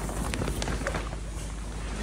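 Wind on the microphone and the rustle of polythene polytunnel sheeting, with a few faint crackles.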